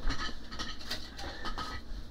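Faint rustling and light knocks of objects being handled on a workbench as a small pen-style voltage detector is picked up, over a steady low hum.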